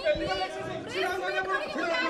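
Several people talking over one another at once, some voices high-pitched.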